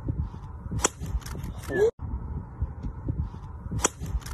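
Driver striking a golf ball off the tee: a sharp crack a little under a second in and again near the end as the short clip loops, with a brief shout between the two strikes over outdoor background noise.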